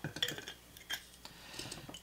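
A few soft glass clinks and taps, mostly in the first second, as the glass simple syrup bottle is capped and handled on the bar.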